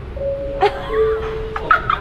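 Airport public-address loudspeaker chime: a two-note bing-bong, a higher steady tone followed by a lower one, each lasting under a second. It is the chime the loudspeaker gives each time it cuts off between announcements. A short laugh comes near the end.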